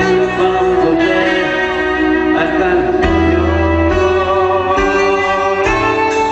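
Live band music: sustained melody notes over a bass line that moves to a new note about halfway through.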